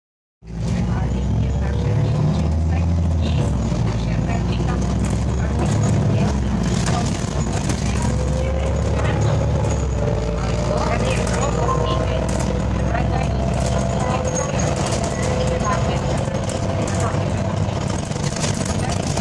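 Irisbus Citelis 10.5 m CNG city bus heard from inside the passenger cabin: a steady low engine rumble, with a drivetrain whine that rises in pitch from about halfway through as the bus gathers speed, and light interior rattles.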